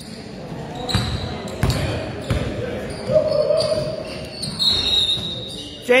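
A basketball bouncing on a gym floor: three dull thumps in the first half as it is dribbled. High short squeaks come about a second in and again near the end, over a murmur of voices in an echoing gym.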